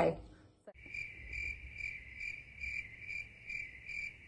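Cricket chirping sound effect: a steady high chirp pulsing about twice a second. It starts abruptly just under a second in, after a brief silence.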